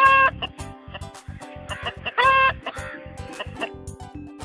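A hen clucking, two short calls about two seconds apart, over light background music with a steady beat.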